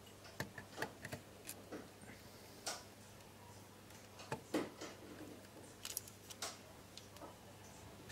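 Screwdriver working a terminal screw on a plastic DIN-rail motor braking unit while wires are handled: faint, scattered, irregular clicks and ticks.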